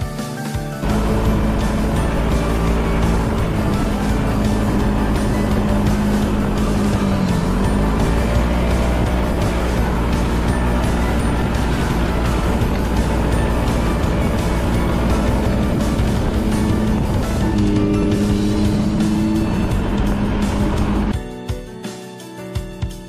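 On-board sound of a Yamaha Majesty S scooter riding at a steady cruise: its 155 cc single-cylinder engine running, with wind and road noise, and music playing underneath. The engine note dips briefly and comes back about seven seconds in. The riding sound starts about a second in and cuts off about a second before the end, leaving only the music.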